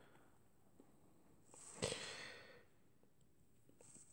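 Near silence with one soft breath, a short breathy sigh from the narrator close to the microphone, about two seconds in.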